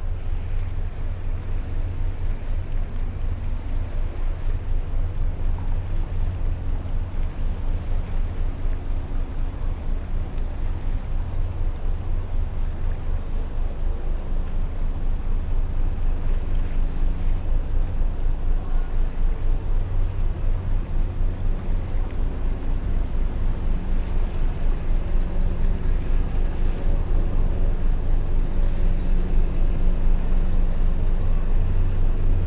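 Low, steady rumble of the 768-foot lake freighter John G. Munson under way as she gains speed through the ship canal. It grows gradually louder as the stern draws near, with a faint steady hum above it.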